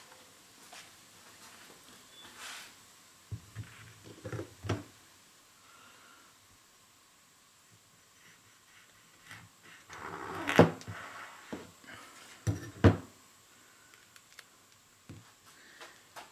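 Cucumbers and a large knife knocking against a plastic cutting board as they are handled: scattered thunks and taps, the loudest a cluster about ten seconds in, then two sharp knocks about two seconds later.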